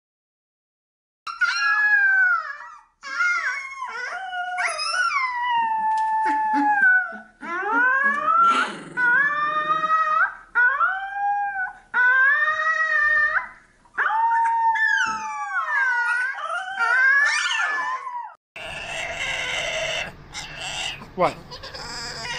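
A husky-type puppy howling: a string of long, high, wavering howls with short breaks between them. Near the end the howling stops and gives way to louder, noisier room sound.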